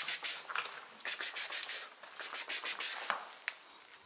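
A man calling a cat with quick hissing 'ks-ks-ks' sounds made with the mouth, in three short runs.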